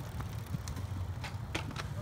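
A cyclocross bike rolling past close on grass, with scattered light clicks from the bike over a steady low rumble.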